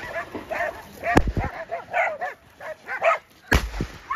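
A pack of hunting dogs barking and yelping in quick, overlapping calls as they bay a wild boar. Two sharp bangs cut through, the loudest about a second in and another near the end.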